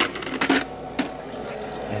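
Three light clinks, about half a second apart, then quieter: bullet-shaped ice knocking against itself and the plastic basket of a countertop Igloo ice maker.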